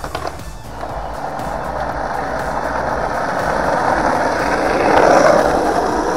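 Skateboard wheels rolling on concrete and asphalt, a steady rumble that grows louder to a peak about five seconds in and then eases off.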